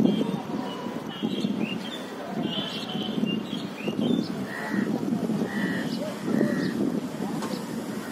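Indistinct, distant voices of people outdoors with no clear words, and birds chirping over them in short high calls, a few repeated calls in the middle.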